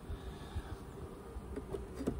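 Honeybees buzzing around an open hive in a steady low hum, with a couple of faint knocks as a wooden frame is lowered back into the hive box.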